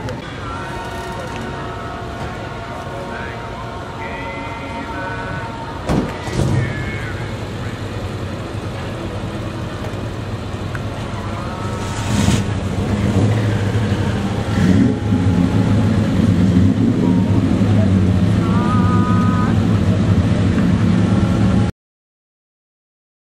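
A car engine running steadily, louder from about halfway through, over people talking. A couple of knocks sound along the way, and everything cuts off suddenly near the end.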